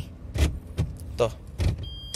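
Datsun Go+ Panca's CVT gear selector lever being moved through its gate, giving a few short plastic clicks and knocks about half a second apart.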